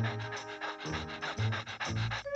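Exaggerated cartoon panting from an exhausted drill sergeant character, fast and rhythmic, over the music score.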